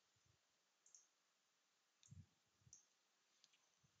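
Near silence, with a few faint computer mouse clicks.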